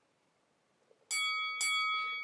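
Near silence for about a second, then a bell-like chime sound effect: two bright strikes about half a second apart, ringing on with several clear tones.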